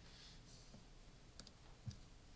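Near silence in a quiet room, with a few faint clicks and a soft low thump near the end.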